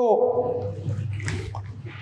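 A man's voice holding a drawn-out "so" that falls in pitch and trails off within the first second. After it come soft, irregular scuffing noises over a steady low room hum.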